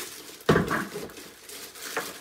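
A single sharp knock about half a second in as an ice cream maker part is set down on the kitchen counter, followed by faint rustling of its plastic wrapping as it is handled.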